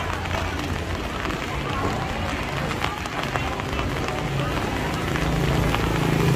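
Rainy street ambience: a steady hiss of rain on wet pavement with scattered light taps and people's voices chatting, and a motorbike engine drawing closer near the end.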